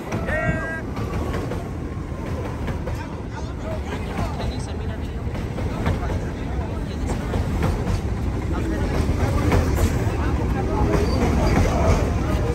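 A New York City subway train pulling into an elevated station, a steady rumble of wheels on the rails with clicking over the rail joints that grows louder toward the end. Short squeals come once just after the start and again near the end.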